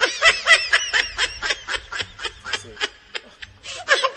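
A man's snickering laugh: a fast run of short breathy pulses, about five a second, that fades after two seconds, with a brief burst again near the end.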